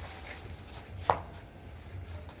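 A bamboo harvesting pole knocks once, sharply, against the mango tree's branches about a second in, with a brief ring after the hit. A steady low hum runs underneath.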